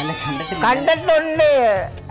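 A man's high falsetto voice with long sliding rises and falls in pitch: a drawn-out, wailing, cat-like delivery rather than plain speech.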